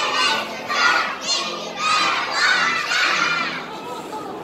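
A group of young children shouting together in high voices, a string of loud shouts one after another that eases off near the end.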